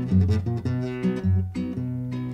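Solo acoustic guitar accompaniment to a folk song: low bass notes about twice a second alternating with strummed chords in a steady rhythm.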